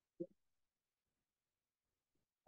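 Near silence, broken once about a quarter second in by a brief murmur from a voice at the microphone.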